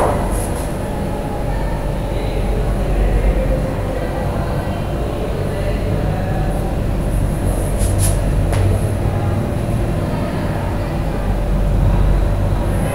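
Steady low rumbling background noise, with two faint clicks about eight seconds in.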